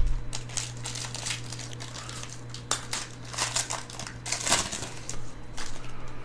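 Plastic wrapper of a Panini Score football card pack crinkling as gloved hands tear it open and work the cards out, in irregular crackles that come louder a little before the middle and again about two thirds of the way through. A steady low hum runs underneath.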